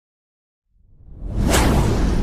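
Cinematic whoosh sound effect for a logo reveal: silence, then a rush of noise rises about two-thirds of a second in and swells quickly to a peak with a deep rumble underneath.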